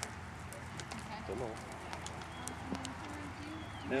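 Faint, distant voices of bystanders over a steady low outdoor background noise, with a few scattered light clicks.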